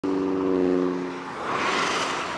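Highway traffic: a vehicle engine drones at a steady pitch for about the first second, then the tyre noise of a vehicle passing close by swells near the end.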